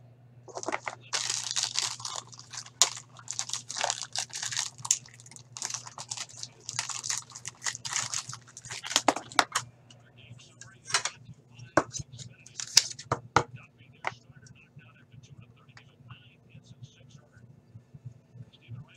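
Packaging being crumpled and handled: dense crinkling and rustling for about ten seconds, then a few scattered crackles and clicks that die down.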